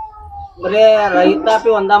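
Speech: an elderly man talking in Kannada, his voice starting about half a second in and running on in short, high-pitched, wavering phrases.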